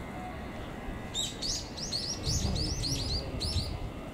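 A small songbird chirping: a rapid run of short high notes, about five a second, starting about a second in and stopping just before the end. A low rumble sits underneath in the second half.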